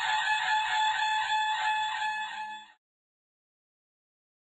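A curved ceremonial horn (tutari) blowing one long, held, buzzy note that cuts off suddenly a little over two and a half seconds in.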